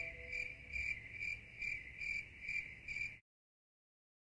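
Cricket chirping: a steady high trill that pulses a little over twice a second over a low rumble, cutting off abruptly about three seconds in.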